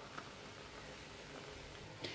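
Very quiet room tone with a faint tick or two near the start; no clear pouring or other activity sound stands out.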